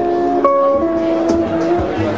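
Live jazz ballad: a semi-hollow electric guitar playing held notes and chords that change about every half second, over a bass line.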